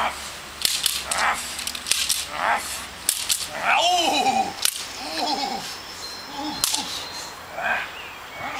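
Sharp cracks of a decoy's agitation stick during Belgian Malinois bite work, about seven or eight at uneven intervals, mixed with loud shouts from the decoy.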